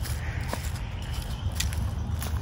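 Footsteps in boots on soft, muddy grass, with a steady low rumble underneath and a couple of faint ticks.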